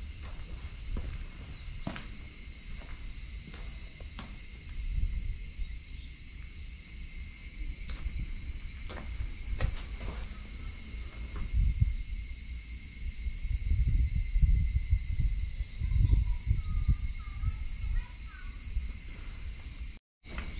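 Footsteps on a concrete floor, about one a second, over a steady high-pitched drone of summer insects. Low rumbling swells come in during the second half, and a few faint bird chirps near the end.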